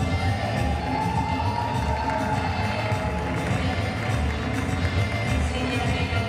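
Latin dance music with a steady beat played over a hall's loudspeakers, with some crowd cheering mixed in.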